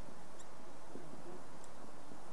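Dry-erase marker squeaking on a whiteboard as a word is written: two short high squeaks about a second apart, over steady room hum.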